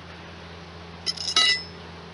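A quick cluster of metallic clinks about a second in, the last and loudest ringing briefly: a steel hive tool knocking against something hard.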